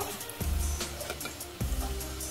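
Background music with a low, steady beat.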